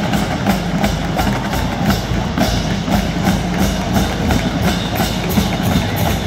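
A marching band drumline playing a cadence: an even beat of about three strokes a second with sharp, clicky hits, over stadium crowd noise.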